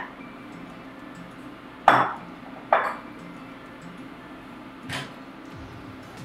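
Two sharp clunks about a second apart, then a softer knock near the end: a wooden spatula and glass bowl knocking against an enamelled cast-iron pan as cooked spaghetti squash is knocked out of the bowl.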